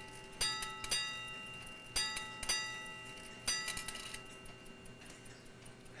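Chelsea Ship's Bell clock's bell striking seven bells for 7:30, in the ship's-bell pattern of strokes in pairs. Two pairs of strokes, each about half a second apart, are followed by a single last stroke about three and a half seconds in, each ringing out before fading.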